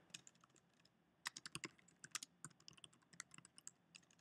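Faint keystrokes on a computer keyboard: quick, irregular clicks of a command being typed, coming thicker from about a second in.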